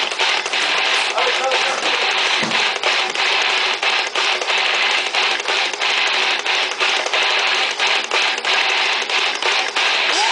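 A heavy metal band playing in a small room: loud distorted electric guitars in a tight, chugging rhythm, broken by many short, sharp stops.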